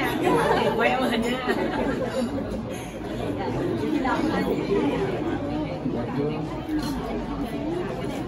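Indistinct chatter of many people talking at once, overlapping voices with no single speaker standing out.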